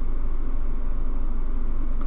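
A steady low hum with nothing else over it.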